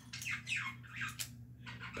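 Faint, scattered clicks and rubbing of plastic K'NEX pieces as a K'NEX claw model is worked in the hands.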